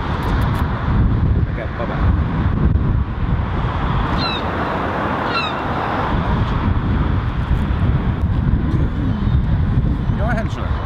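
Wind buffeting an outdoor microphone, a steady gusty rumble, with two brief high chirps about four and five and a half seconds in.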